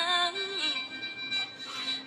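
A young woman singing a Thai song in a high, sweet voice: one held note with vibrato that fades out about halfway through, followed by a short lull before the next line.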